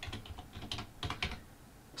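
Typing on a computer keyboard: a quick run of key clicks that stops after about a second and a half.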